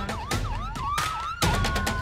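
Emergency vehicle siren yelping in quick up-and-down sweeps, about three a second, then switching to a steady held tone with a second tone slowly falling, as ambulance and responder vehicles race to a call. Sharp percussive hits sound alongside.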